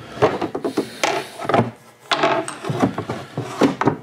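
Wooden handling noise from a walnut machinist's tool chest: irregular knocks, clicks and rubbing as the chest and its door or drawers are shifted and bumped.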